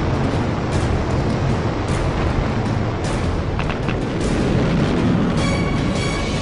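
Steady, loud rumbling roar of the animated sky-crane descent stage's rocket thrusters, mixed with a dramatic music score. Sustained high notes come in near the end.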